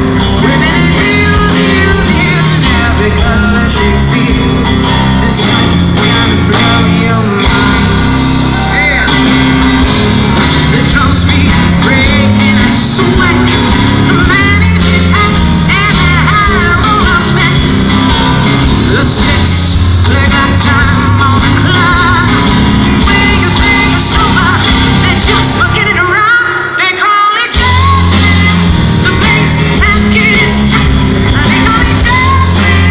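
Live rock-blues band playing loud: a woman singing at the keyboard over electric guitar, bass guitar and drums. Near the end the bass and drums drop out for about a second, a short break in the song, before the band comes back in.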